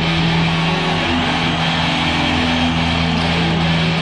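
Live heavy metal band playing an instrumental passage: distorted electric guitars hold long, steady notes over bass and drums.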